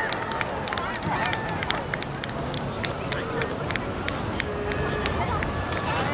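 Outdoor city plaza ambience: background voices of passers-by over a steady street wash, with scattered sharp clicks and taps.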